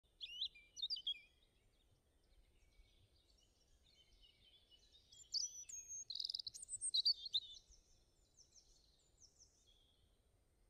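Small bird chirping and singing: quick, high sweeping whistles in two spells, one in the first second and a louder one from about five to seven and a half seconds in, with fainter chirps trailing after.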